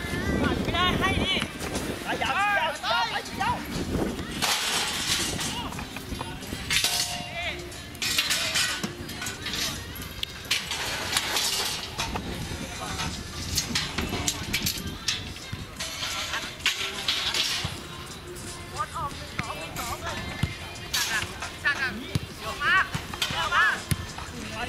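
Football players' voices calling and shouting across the pitch, with short bursts of rushing noise between the calls.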